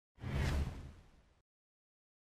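A whoosh sound effect with a deep low end marks an edit transition. It comes in suddenly a moment in, peaks about half a second in and fades out over about a second.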